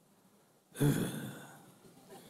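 A man's short, breathy sigh, with a little voice in it, starting suddenly about a second in and trailing off.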